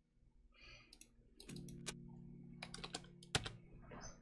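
Faint clicking of a computer keyboard and mouse: a handful of separate sharp taps in the second half, over a faint steady low hum.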